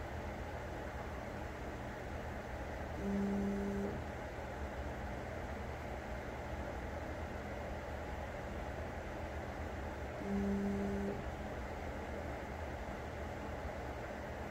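Prusa XL 3D printer's stepper motors buzzing twice, each a short steady two-note hum under a second long, about seven seconds apart, over a steady background hum. The printer is repeating the same up-and-down move over and over in its pre-print routine.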